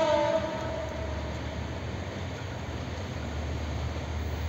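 The horn of an approaching EMD GT42ACL diesel-electric locomotive cuts off in the first half-second, followed by the train's steady low rumble.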